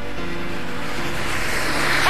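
A car passing on the road, its noise growing louder and peaking near the end.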